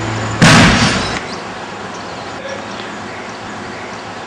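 A sudden loud burst of noise about half a second in, dying away within a second, followed by a steady hiss.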